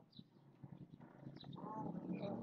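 A man's voice, a drawn-out wordless hum or vowel sound beginning about one and a half seconds in, over faint room sound.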